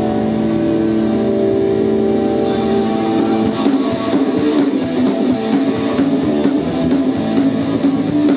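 A live rock band playing loud. Electric guitar chords ring out, then from about halfway in the drums come in with a steady beat of cymbal strikes.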